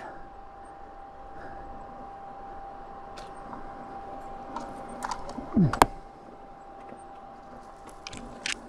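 Tall grass and weed stems brushing and scraping against a slowly moving dual-sport motorcycle on an overgrown track, with a faint steady whine underneath. Scattered light clicks, and one sharp crack a little before six seconds in.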